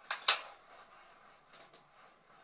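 Two sharp clicks close together just after the start, the second the louder, then quiet room tone with a few faint ticks.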